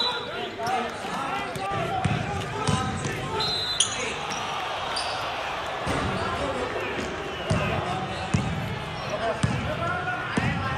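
A basketball being dribbled and bounced on a hard gym floor, with irregular thumps that echo through a large hall. Players' voices and calls carry underneath.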